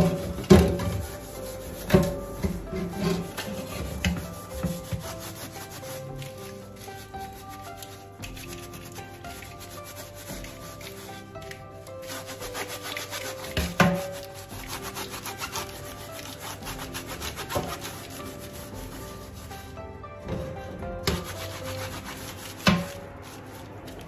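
A sponge scrubbing a metal cooker-hood grease filter and its frame over a stainless steel sink: repeated rubbing strokes, with a few sharp knocks of the frame against the sink.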